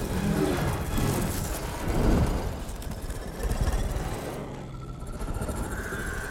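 Low, rumbling creature growls from film sound design: the Matagot spirit cats snarling as they swarm. The rumble swells about two seconds in.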